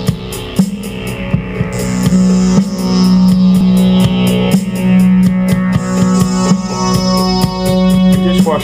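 Instrumental intro music: a steady drum beat over a held low note and layered keyboard or guitar tones.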